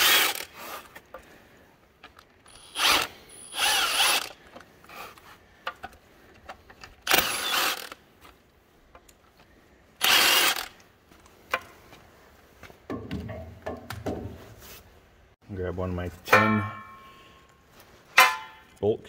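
Milwaukee M18 cordless ratchet spinning out cover bolts that were already broken loose by hand, in several short runs of under a second each with pauses between them.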